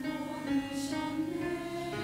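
Church choir singing a sustained passage of an Easter cantata in Korean, moving slowly from one held chord to the next.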